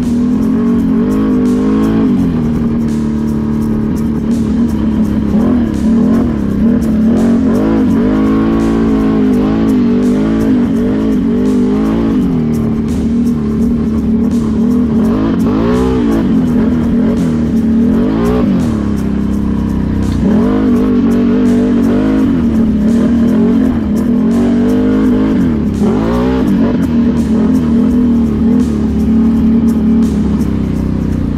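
ATV engine running while riding, its pitch rising and falling again and again as the throttle is worked.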